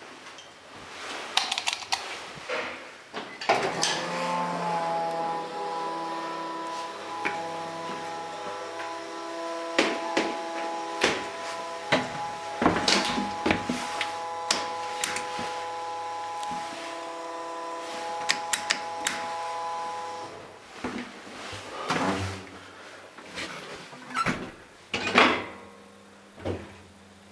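DEVE roped hydraulic elevator on a ride: a few clicks and knocks, then a steady whining hum from the hydraulic drive for about sixteen seconds that stops suddenly. Loud knocks and clatter from the sliding doors come near the end.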